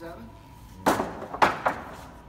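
Wooden lumber boards knocking together as they are loaded onto a stack on a lumber cart: three sharp wooden knocks in quick succession about a second in, the middle one loudest.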